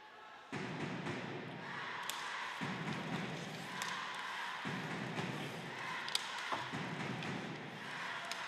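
Ice hockey arena sound during live play: steady crowd and rink noise that comes up about half a second in, with a few sharp clicks of sticks and puck, about two, four and six seconds in.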